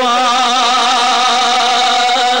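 A man's voice singing Punjabi devotional verse, holding one long note with a steady wavering vibrato.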